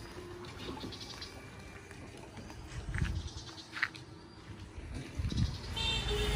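Faint outdoor background with a few short animal calls, two of them a little over three seconds in.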